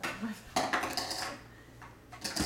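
A burst of clattering and knocking of hard plastic toys being handled by a toddler, loudest from about half a second in and lasting under a second.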